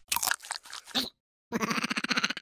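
Cartoon crunching bite sounds: a quick run of crunches in the first second, then after a short pause a rapid buzzing rasp near the end.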